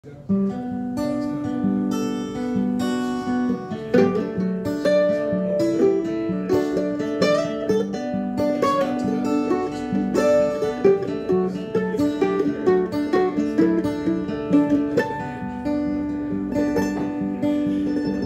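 Acoustic guitar and mandolin playing together: strummed guitar chords under picked mandolin notes, an instrumental intro that begins a moment in.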